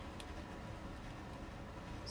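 Quiet steady room noise with one faint click shortly after the start.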